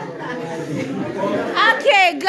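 Several people chattering at once, then one louder voice speaking near the end.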